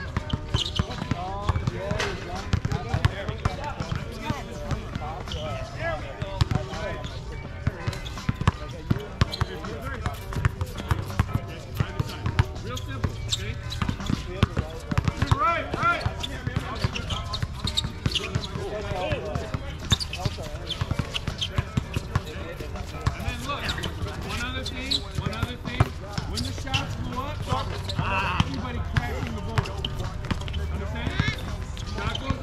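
Basketball bouncing on an outdoor hard court during a game, a string of sharp, irregular thuds.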